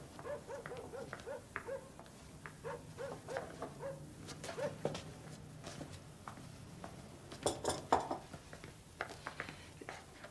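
Quiet room with runs of soft, short pitched notes, about three a second, in the first half. About seven and a half seconds in come several bright clinks of china cups and saucers being handled.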